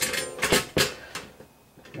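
A few small clicks and knocks of hard objects being handled on a counter during soldering work, with two sharper ones about half a second and three-quarters of a second in.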